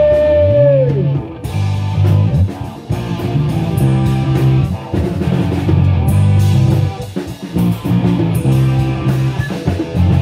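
Live rock band playing an instrumental passage with guitars and drum kit. A long held note slides down and ends about a second in, then a low line of stepping notes carries on under steady drum hits.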